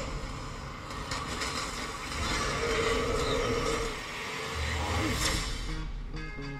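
Film trailer soundtrack playing back: a dense, continuous noisy wash of action-scene sound effects, with music low beneath it.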